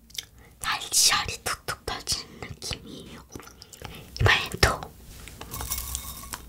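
Close-miked chewing of crisp angel-hair candy, spun strands of caramelized sugar, in short bursts of crackly crunching, mixed with soft whispered talk. Near the end, a fine crackly rustle as strands of the candy are pulled apart on the plate.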